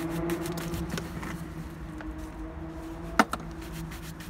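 Quick brisk strokes of a shoe brush buffing a black leather shoe, with one sharp tap a little over three seconds in, over a steady low hum.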